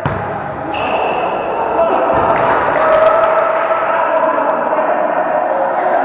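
A volleyball struck with a sharp smack right at the start, then a brief high squeak. Players' voices echo through a large sports hall after it, with another ball thump about two seconds in.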